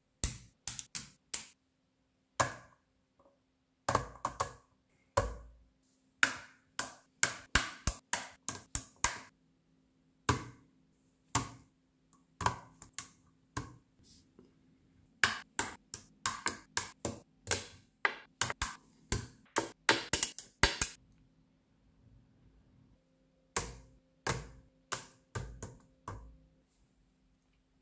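Magnetic construction set of 5x25 mm rod magnets and 10 mm steel balls clicking and clacking as lattice panels are snapped together into a cube. Dozens of sharp clicks come in irregular bursts, with a few short pauses.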